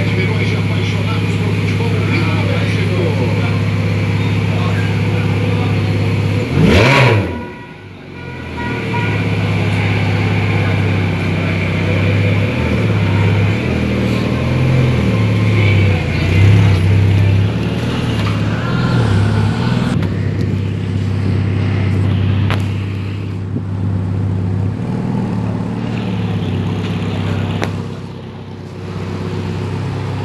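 Ferrari F430's V8 engine running at idle, with a sharp rev about seven seconds in. Its revs then rise and fall unevenly for several seconds.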